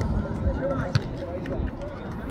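Distant voices of people on a training pitch, with one sharp thump of a football being kicked about a second in.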